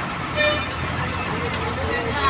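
A short vehicle horn toot about half a second in, over the steady low rumble of idling engines and street traffic.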